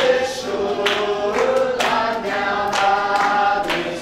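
A small group of people singing together, clapping along about once a second.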